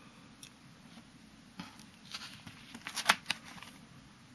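Plastic binder sleeve pages being handled and turned: a crinkly rustle with several sharp clicks, the loudest about three seconds in.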